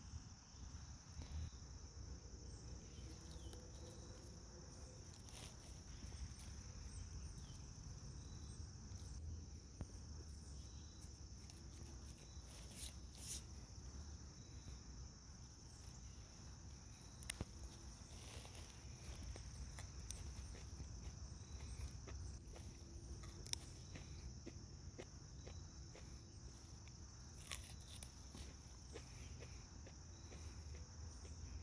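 Faint woodland ambience: a steady, high-pitched insect drone, with a low rumble and a few soft clicks and rustles scattered through.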